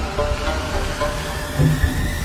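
Background music playing over the steady low rumble of an elevator car travelling upward.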